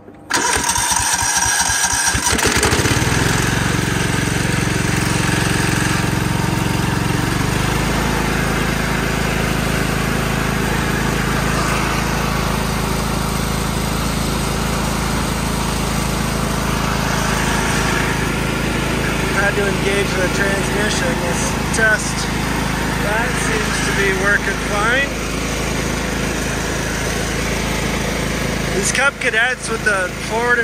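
Cub Cadet HDS 2135 riding mower engine cranked by its starter for about two seconds, then catching and starting on its own without a shot of carb cleaner. It then runs steadily, its note changing about seven seconds in.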